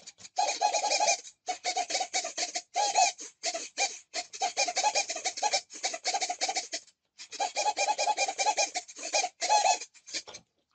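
Small RC servos on a foam glider's control surfaces buzzing in rapid, irregular stuttering bursts of gear whine, with short breaks and a longer pause about seven seconds in. The servos are moving on their own, unexpectedly, after the flight controller powers up.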